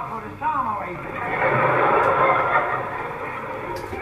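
A theatre audience laughing, on an old bandwidth-limited live recording. The laughter swells after a brief bit of a man's speech at the start, peaks about halfway, and dies away toward the end.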